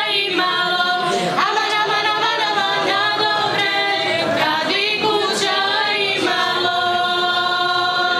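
A small group of women and girls singing a cappella together, ending on a long held note.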